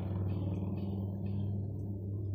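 A CSX diesel locomotive passing, its engine giving a steady low drone with patchy rattling noise over it in the first half.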